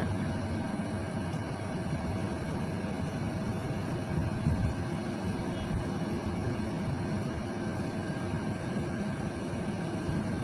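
Steady background noise without speech, with a faint hum running through it.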